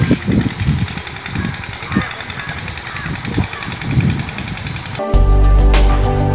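Outdoor location sound with uneven low thumps and rustling, cut off abruptly about five seconds in by soft, steady instrumental music.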